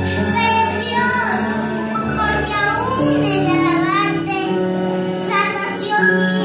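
A young girl singing a psalm, accompanied by an electronic keyboard playing held chords under her gliding melody.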